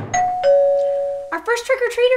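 Electronic two-tone "ding-dong" doorbell chime: a higher note, then a lower note held for about a second.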